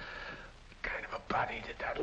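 Speech only: a man's low, indistinct talking, breathy at first, then voiced words from about a second in.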